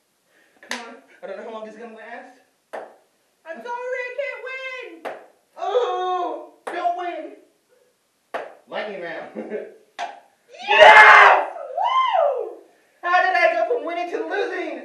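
Two people's voices in short, unclear bursts of talk and exclamation. About eleven seconds in comes a loud shout, then a cry that rises and falls in pitch.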